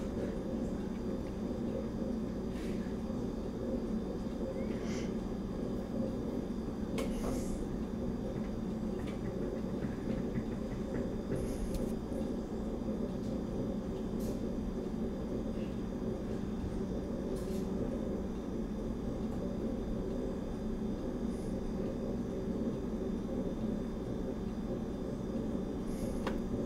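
Steady low hum of background room noise, with a few faint clicks scattered through it.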